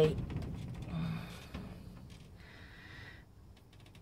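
A woman breathing: a short low murmur about a second in, then a breathy exhale around two and a half to three seconds in. Low handling rumble comes from the camera as it is moved, mostly in the first second and a half.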